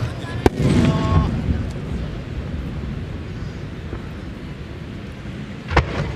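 Large No.10 (shakudama, about 30 cm) aerial firework shells bursting: a sharp boom about half a second in and another near the end, each followed by a long rolling rumble.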